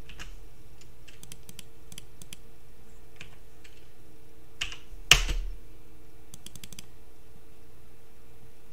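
Keystrokes on a computer keyboard, scattered clicks as a command is typed, with one louder knock about five seconds in, over a faint steady hum.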